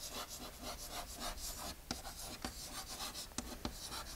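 Chalk writing on a blackboard: a run of short, scratchy strokes with a few sharper taps of the chalk against the board.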